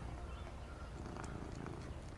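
A domestic cat purring steadily as it is stroked.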